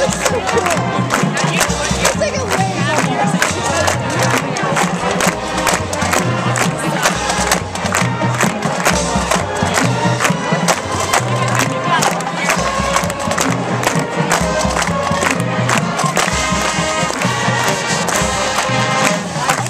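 Marching band playing, with horns holding chords over a steady drum beat, and crowd noise from the stands beneath.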